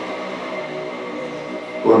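Steady background noise in a pause between words: an even hiss with a few faint steady hum tones and no distinct event.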